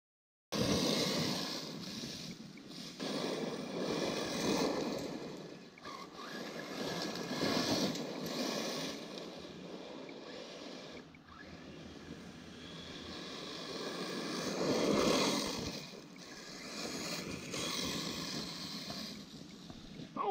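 Brushless 1/8-scale RC buggy (Arrma Typhon on 6S with a Hobbywing Max8 and 2250 kV motor) being driven on gravel and grass. Its tyre and motor noise swells and fades several times as it runs near and away.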